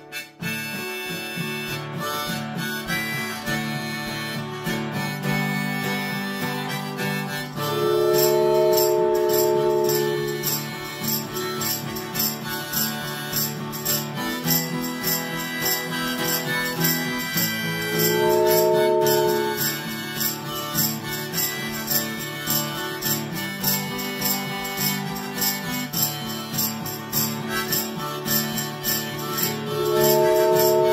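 Acoustic guitar strummed in a steady rhythm with a harmonica in D playing the melody. A wooden train whistle blows a long chord-like blast about eight seconds in, a shorter one around eighteen seconds, and starts another right at the end; these blasts are the loudest sounds.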